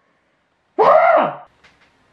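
A man's single short wordless vocal sound, about half a second long, its pitch dropping at the end, followed by a couple of faint clicks.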